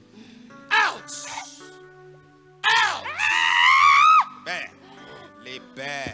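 A woman screaming into a microphone held at her mouth. A short cry comes about a second in, then a long, high scream rises and is held for over a second, followed by shorter cries, all over sustained background keyboard music.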